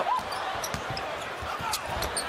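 Basketball dribbled on a hardwood court, a few sharp bounces spread over two seconds, over a low haze of arena noise.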